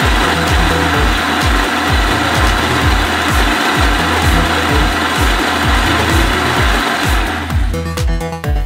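Ninja Auto-iQ blender running a timed blend of a milkshake, a steady whir that stops shortly before the end. Electronic background music with a steady kick-drum beat plays throughout.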